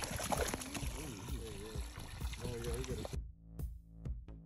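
Water spraying and splashing into a boat's live well that holds trout, with voices in the background. About three seconds in, it cuts abruptly to electronic dance music with a steady beat.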